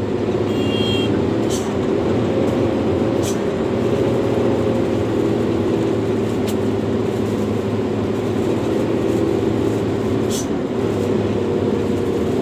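Hino 500 truck's diesel engine running steadily, heard from inside the cab while driving on a rough dirt road. Short sharp clatters come every few seconds as the truck rides over the bumps.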